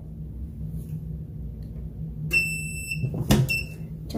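Heat press timer beeping to signal that the pressing time is up: one high electronic beep about half a second long. A loud clack follows, then a second, shorter beep.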